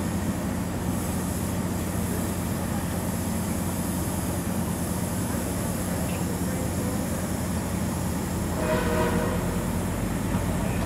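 A MARC commuter train's diesel locomotive running steadily alongside its bilevel coaches, a constant low hum with noise on top. A brief higher-pitched tone sounds about nine seconds in.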